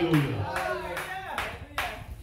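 A few scattered hand claps, unevenly spaced, with a voice trailing off in the first half second.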